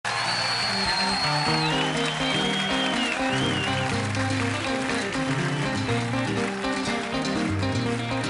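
Live Afro-pop band playing with a stepping bass line under held chords. A high, sliding tone wavers above the band over the first few seconds.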